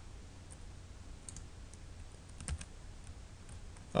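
A few faint, scattered clicks from a computer keyboard and mouse, the loudest about two and a half seconds in, over a steady low hum.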